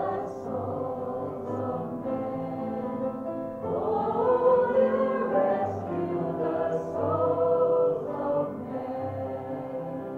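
A small group of girls singing a worship song together, holding long notes, growing louder a few seconds in and easing off near the end.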